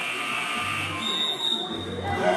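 A gym's electronic game-clock buzzer sounding one short, high, steady tone about a second in, lasting under a second, over voices in the hall.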